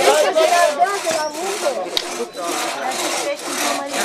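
Two-man crosscut saw cutting through a log on a wooden sawhorse, pulled back and forth in an even rhythm of about two to three rasping strokes a second.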